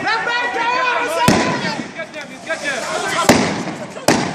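Two sharp bangs about two seconds apart, the second the louder: crowd-control weapons fired by riot police, amid tear gas. Men's voices call out between them.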